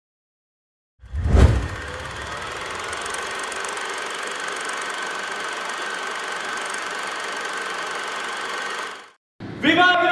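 Trailer sound design under a production logo: a deep low hit about a second in, then a steady dense wash of sound that cuts off abruptly near the end. In the last half second a group of men starts shouting.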